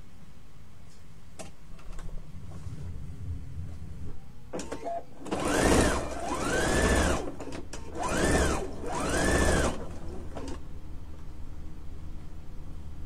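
Sewing machine stitching a seam in four short runs of about a second each, starting about five seconds in. The motor's pitch rises and falls with each run as it speeds up and slows down. Before the runs there are a few light clicks.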